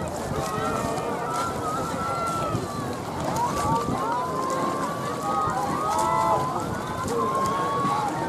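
Many voices talking and calling out over one another, a steady babble with no single speaker standing out, over light wind noise.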